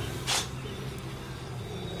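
A steady low hum, with a brief hiss about a quarter of a second in.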